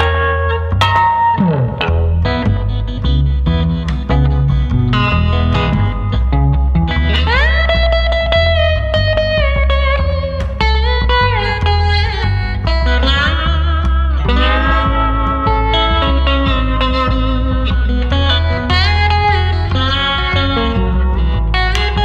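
Instrumental break on a Coodercaster-style electric guitar with gold foil pickups, played through a Dumble-style amp and a Reverberammo reverb unit. It plays a lead line whose notes glide up and down, over a plucked upright bass line.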